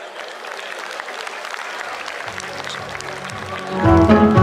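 Audience applauding, an even clatter of many hands, with music fading in about halfway through and swelling loud near the end.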